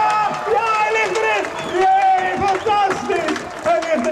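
Men yelling and cheering in raised voices, with a crowd shouting behind them.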